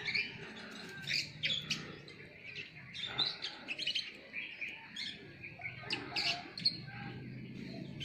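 Small birds chirping and singing in short, irregular high calls, several overlapping, with no pause for long.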